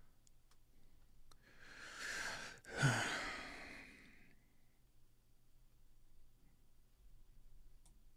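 A man's audible sigh: a breathy inhale about one and a half seconds in, then a long sighing exhale that fades out about four seconds in. A few faint clicks come before it.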